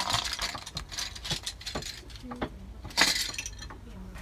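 A bundle of dry bamboo drinking straws clattering and clicking together as it is handled. There is a denser clatter at the start and again about three seconds in, with scattered single clicks between.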